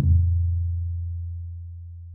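A low, pure bass note from an outro sound effect rings out and fades steadily.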